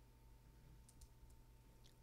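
Near silence: room tone with a faint steady tone and a few soft clicks, the first about a second in.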